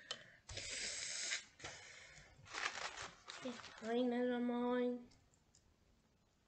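A person breathing noisily through the nose, in several short sniffing or blowing breaths, with sinus congestion. Near the end comes one steady hummed 'mmm' of about a second.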